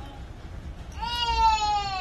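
One long high-pitched call starting about halfway through, slowly falling in pitch.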